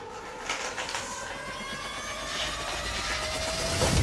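Fast, continuous sucking and slurping through a straw from a Capri Sun foil pouch, the foil crinkling as it collapses. Thin squealing tones rise slowly and the sound grows louder until it stops abruptly near the end, as the pouch is drained.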